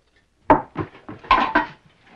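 Dishes and pots clattering as they are set down on a table: a sharp knock about half a second in, then a few more knocks.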